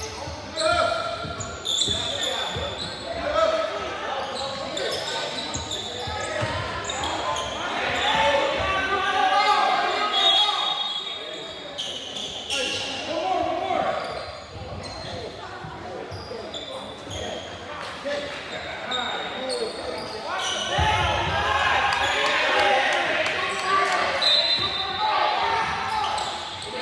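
Basketball game sounds in a large, echoing gym: a ball bouncing on a hardwood court with many short strikes, and players and spectators calling out.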